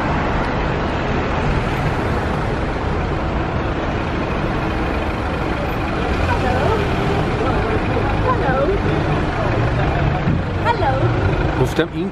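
City street traffic noise: a steady rumble of passing cars and buses, with people's voices showing through in the second half.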